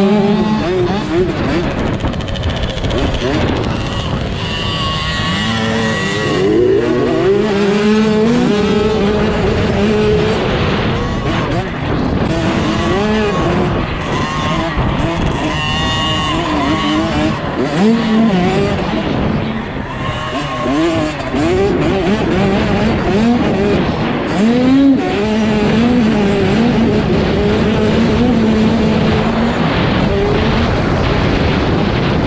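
Dirt bike engine revving hard and easing off again and again as it rides the track, its pitch climbing and falling many times, with other mini dirt bikes running close by.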